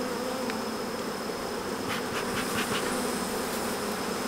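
Honeybees buzzing around an opened brood box, a steady hum, with a few faint clicks about two seconds in.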